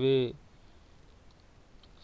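A man's spoken word ending in the first moment, then near silence with a faint single click shortly before the end.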